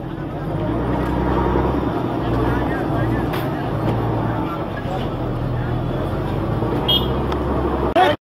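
A motor vehicle's engine running steadily close by, a low even hum, with people's voices talking underneath.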